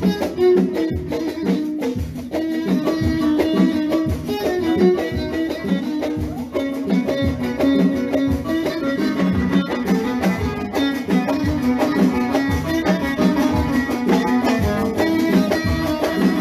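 Live band music: a violin and keyboard playing a melody over a steady drum beat.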